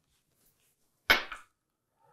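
A single short, sharp knock about a second in, fading quickly; otherwise near silence.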